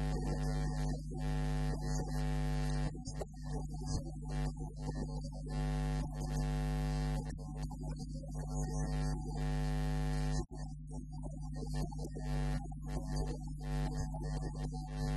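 Loud, steady electrical mains hum under a layer of held musical tones that change only slowly, with a brief dropout about three-quarters of the way through.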